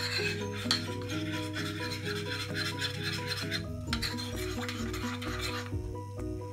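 A spoon stirring flour batter in a bowl, a rough scraping in two spells with a short break just before the middle, stopping shortly before the end. Background music plays throughout.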